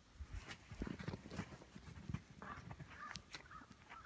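A man and a large brown bear play-wrestling in snow: irregular soft thumps and scuffling, with short animal sounds mixed in.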